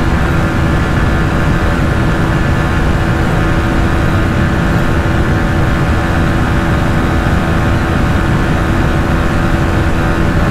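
TVS Apache RTR 160 4V single-cylinder engine running flat out, holding a steady pitch at its top speed of about 130 km/h, under heavy wind rush on the handlebar-mounted microphone.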